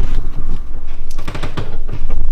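Handling noise from a handheld camera being carried at a walk: a loud low rumble with a quick, irregular run of knocks and rustles as the microphone is jostled.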